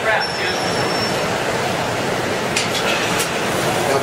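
Steady rushing noise of the glass studio's gas-fired glory hole and furnace burners running, with a few light clinks a little past halfway.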